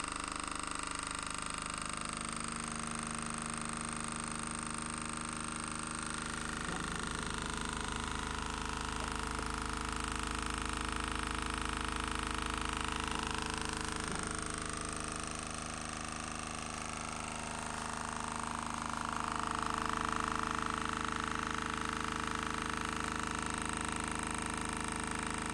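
Small brushed DC motor running steadily under light load, spinning a disc magnet, a continuous whine with a hum beneath it that swells slightly about twenty seconds in.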